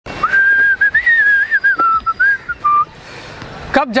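A man whistling a short tune: a string of clear gliding notes for about two and a half seconds, ending on a lower held note.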